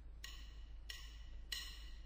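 Drumsticks clicked together three times, about 0.6 s apart, as the count-in at the start of a live band recording, over a steady low hum of background noise.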